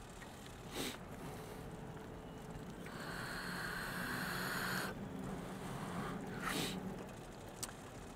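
Faint running noise of an electric-assist recumbent quadricycle being ridden, a low steady hum with a higher whine that swells for about two seconds in the middle. Two brief swishes come about a second in and again near the end.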